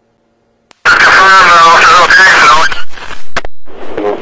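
Police radio traffic: after a second of silence, a radio transmission with a voice that the recogniser could not make out, broken by sharp squelch clicks near the middle, then another noisier transmission begins near the end.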